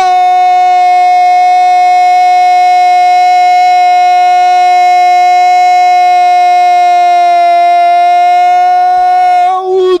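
A radio football narrator's prolonged goal cry: one loud, long 'gooool' held on a single steady pitch for about nine and a half seconds, breaking off shortly before the end into more shouting.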